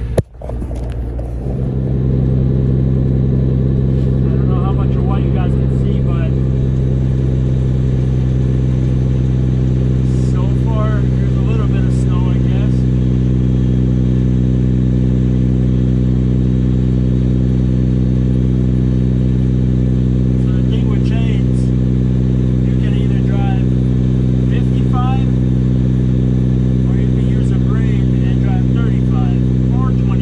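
Semi truck's diesel engine heard from inside the cab, settling into a steady drone within the first two seconds and holding at cruising speed.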